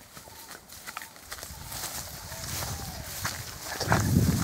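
Footsteps through dry forest undergrowth, with twigs and leaf litter snapping and crackling underfoot in an irregular run of clicks, and a low rustling rumble building toward the end.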